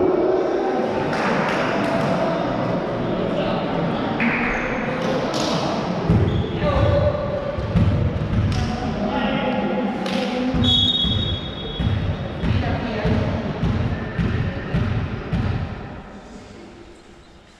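Voices calling and shouting in a sports hall with repeated low thumps from about six seconds in, typical of a volleyball being bounced on the court floor. The hall quietens at the very end.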